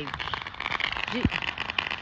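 Distant fireworks crackling and popping in a rapid, irregular stream of small clicks, with one short pitched sound that rises and then drops away a little after a second in.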